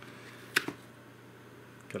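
A sharp click about half a second in, followed at once by a smaller one: a metal airbrush, its air hose attached, being set down on a workbench.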